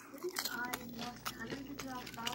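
A person biting into and chewing a mouthful of taco salad with Doritos chips, with a run of crunchy clicks and a couple of short hums.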